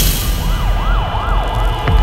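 A siren wailing in quick rising-and-falling sweeps, about three a second, over a low rumble, with a sharp click near the end.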